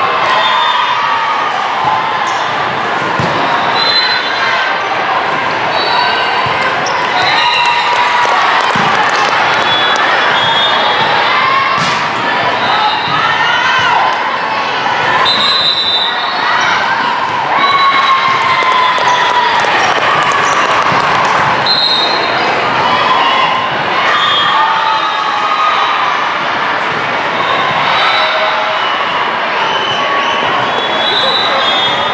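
Volleyball being played indoors in a large, echoing hall: balls struck and bouncing on the hard court, sneakers squeaking, and players and spectators calling out and cheering over a steady din of voices.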